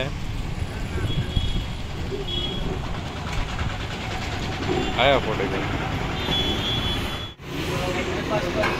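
Steady rumble of road traffic, with a short call from a man's voice about five seconds in. The sound drops out abruptly for a moment near the end.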